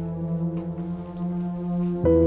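Background film score: a sustained low droning chord, held steadily, with a new chord entering at the very end.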